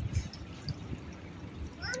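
Faint background hiss with a low rumble, then near the end a small child calls out "Mommy" in a high voice.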